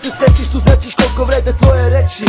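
Hip hop track with rapped vocals over a beat of kick drums and long, deep bass notes.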